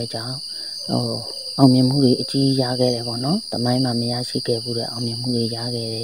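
A person speaking continuously, with a short pause near the start, over a steady high-pitched background drone.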